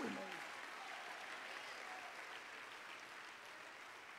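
Faint applause from a congregation, thinning out and dying away within about two and a half seconds, followed by near silence.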